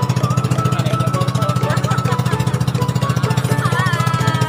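Engine of a motorised outrigger boat (bangka) running steadily under way, a rapid, even chugging of about twelve pulses a second.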